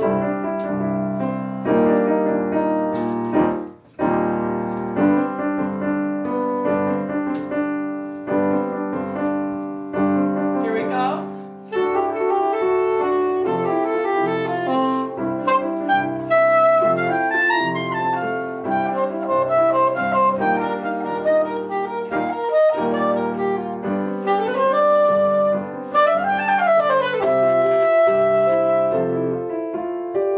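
Grand piano playing a flowing passage, joined partway through by a soprano saxophone playing a melody over it.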